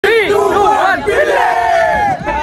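A group of men shouting and cheering together, many voices at once.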